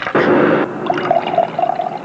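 Soda poured from a bottle into a wine glass: a splashy rush of liquid at first, then a steady ringing pouring tone as the stream runs into the glass.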